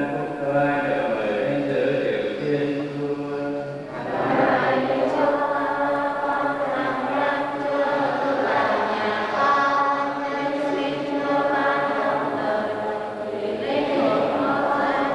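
Church choir singing a hymn in held, chant-like notes.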